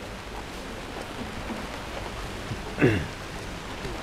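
A steady, even hiss of background noise during a pause in a man's talk; about three seconds in, a short vocal sound from him falls in pitch.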